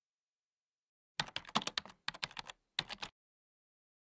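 Rapid clicking of computer keyboard keys being typed, in three short bursts.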